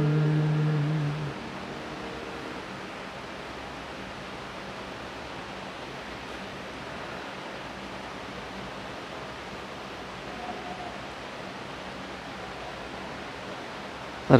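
The last held chord of the music ends about a second in, followed by steady, even room hiss.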